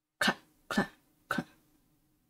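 Three short, sharp 'clack' sounds about half a second apart, made with the mouth as the comic's footstep sound effect.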